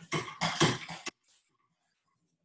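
A man's voice making two short vocal bursts, then an abrupt cut to near silence a little past halfway.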